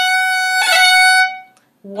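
Fiddle bowed on one long F sharp on an up bow, with a quick roll ornament flicked in about halfway through. The note fades out about a second and a half in.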